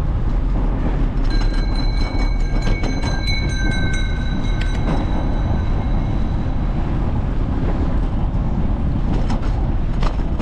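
Steady wind and tyre noise of a bicycle riding along a city street. From about a second in to about six seconds, a high steady squeal of several tones is heard, with rapid ticking at about four a second.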